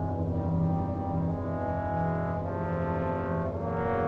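Film score: slow, dark orchestral music of low sustained chords. The harmony shifts twice, about halfway through and again near the end.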